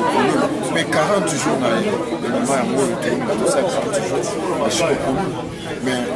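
Speech only: people talking, with voices overlapping in chatter.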